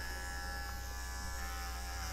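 Electric dog clipper with a number 15 blade running at a steady buzz as it shaves the hair on a cocker spaniel's ear.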